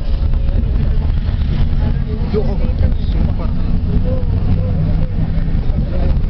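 Steady low rumble of a vehicle's engine and road noise, heard from inside the moving vehicle, with faint voices in the background.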